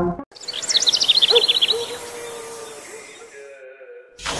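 A bird singing a quick run of about a dozen high chirps that fall in pitch over about a second, over a soft outdoor hiss that fades away. A faint steady hum runs underneath.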